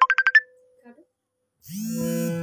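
Harmonium drone under a rapid, evenly pulsing high note that cuts off suddenly about half a second in. About a second of near silence follows before the harmonium drone starts again near the end.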